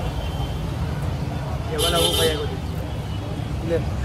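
Busy street background: a steady low rumble of traffic with voices, and one brief loud sound about halfway through.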